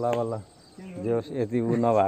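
A man's voice talking, with a short pause about half a second in before the voice resumes.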